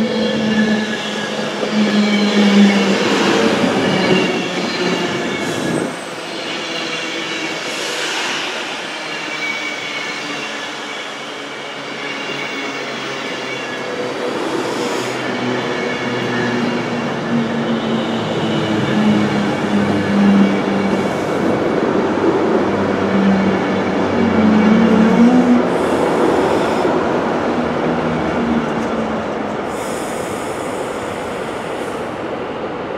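Class 390 Pendolino electric multiple unit moving slowly along the platform. Its electric traction drive gives a whine of several steady tones that shift in pitch, over wheel-on-rail noise with a few knocks.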